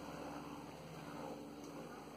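Quiet room with a faint steady hum and soft, faint handling of a small stack of trading cards.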